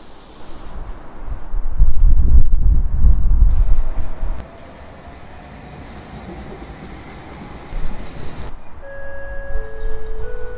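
Low rumble of a passing rail vehicle, loud for a couple of seconds about two seconds in, then a steady quieter rumble with a faint slowly rising whine. Near the end several held electronic tones at stepped pitches sound, like a chime.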